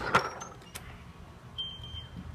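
A door being opened: one sharp click or knock just after the start, then quieter handling noise, with a short thin high tone near the end.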